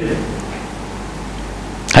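A pause in a man's speech filled with steady background hiss and a low hum. A short burst of his voice comes at the very end.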